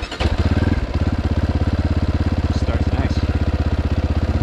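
GPX FSE300R motorcycle engine starting up on an ARacer Mini5 ECU. It catches within a fraction of a second and settles straight into a steady, evenly pulsing idle, a clean start with no stumbling.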